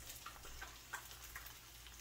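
Egg frying gently in olive oil in a pan: a faint sizzle with a few small, scattered crackling ticks.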